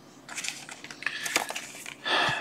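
Printed paper leaflets rustling and crinkling as they are handled, with a few small sharp ticks.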